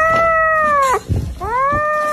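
A kitten's long, drawn-out meowing cries, two in a row. Each rises and then falls in pitch, with a short break about a second in.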